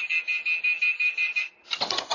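Electric rental scooter's anti-theft alarm beeping rapidly at a high pitch, set off by someone pushing it away without unlocking it. The beeping stops about one and a half seconds in, followed by a short clatter as the scooter falls to the pavement.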